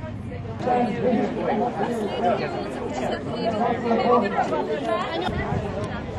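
Many people chatting at once: the overlapping conversation of a crowd, with no single voice standing out. It starts about half a second in.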